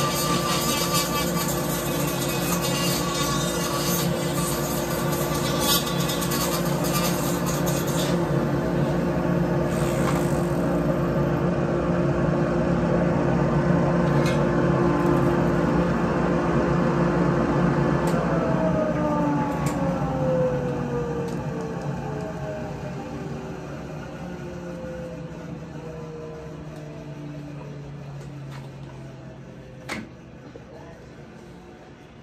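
Electric motor of a flex-shaft grinder, used for porting a chainsaw cylinder, running at a steady speed, then spinning down about eighteen seconds in. Its pitch falls steadily and the sound fades over the last ten seconds.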